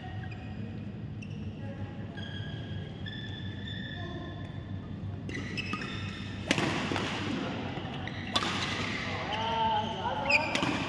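Badminton play on a court mat: short high squeaks from shoes sliding on the mat, then two sharp racket hits on the shuttlecock about six and a half and eight and a half seconds in, over a steady hall hum.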